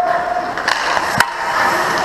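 Ice hockey skates scraping and carving on rink ice, with a sharp crack about a second in.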